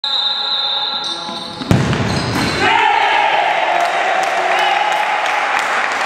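A futsal ball struck hard on an indoor wooden court, a single sharp thud about two seconds in, followed by a long, slowly falling shout and cheering in the hall as the goal goes in.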